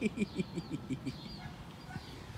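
A man laughing: a quick run of about seven short 'ha's in the first second, falling in pitch.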